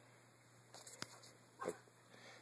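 A small dog gives one short, faint bark about one and a half seconds in. A sharp click comes about a second in.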